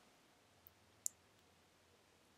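Near silence broken by two short clicks of a computer mouse, a faint one about two-thirds of a second in and a sharper one just after a second in.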